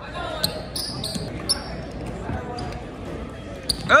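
A basketball game in a gym: the ball bouncing on the hardwood court and short sharp squeaks and knocks from play, over a steady crowd din with voices. A loud shout comes right at the end.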